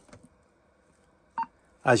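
A warning-system loudspeaker gives one short, pitched tick about halfway through. This is the confidence tick, which shows that the warning line from the carrier control point is live and working.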